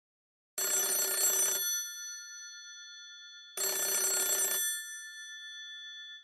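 A telephone ringing twice for an incoming call, each ring lasting about a second, about three seconds apart, with the ring's bell tone lingering and fading after each.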